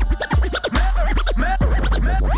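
Vinyl record scratched back and forth on a turntable, many quick rising and falling pitch sweeps, over a loud electronic beat with deep bass.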